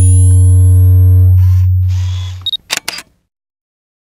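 Logo-intro sound effects: a loud, deep steady bass drone with higher steady tones over it for about two and a half seconds, with camera-shutter noises partway through and a few sharp clicks about three seconds in.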